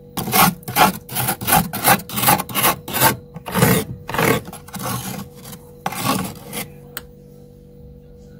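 Metal utensil scraping thick, crystalline frost in a freezer compartment: a run of quick scraping strokes, about two to three a second, that stops roughly a second before the end.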